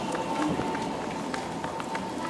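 A crowd of people walking on paved ground: a quick, irregular patter of many footsteps, with voices in the background and a faint, steady high tone.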